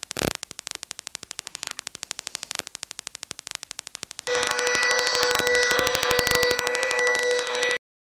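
Electronic sound effect: rapid, even ticking at about ten ticks a second, then a louder electronic tone with a steady pitched hum from about four seconds in, which cuts off suddenly near the end.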